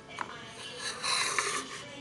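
Close handling noise: a sharp click, then a second or so of rustling and rubbing with another click in the middle, as small plastic craft pieces and packaging are handled right by the microphone.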